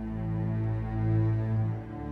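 Symphony orchestra playing slow, sustained low notes, swelling about a second in and easing off near the end.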